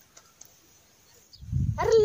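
Near silence for over a second, then a low rumble comes in and a voice calls out a drawn-out, high "Arre" near the end.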